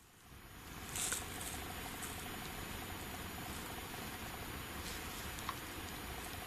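Faint steady hiss of quiet night-time background, fading up from a brief dropout at the start, with a soft rustle about a second in and a tiny click near the end.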